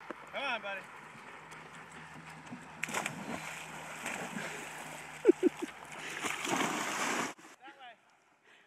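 Dogs jumping off a wooden dock into a pond: a sharp splash about three seconds in, then several seconds of splashing water as they swim out. The sound cuts off suddenly near the end.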